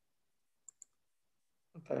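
Two short, sharp clicks close together, a little under a second in; a man's voice begins just before the end.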